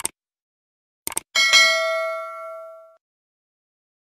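Click sound effects, one at the start and a quick double click about a second in, followed by a bright bell ding that rings and fades over about a second and a half: the subscribe-button and notification-bell sound effect.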